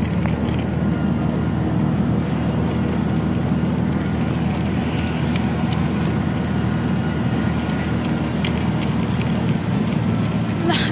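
Steady engine drone and road rumble heard from inside a moving vehicle, with some wind noise coming in through its open side.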